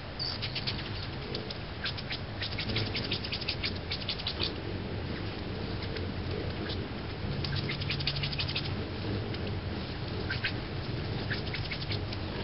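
Hummingbirds at a feeder giving rapid runs of high, sharp chip notes, three bursts of many quick ticks, over a low steady hum of wings that swells near the middle.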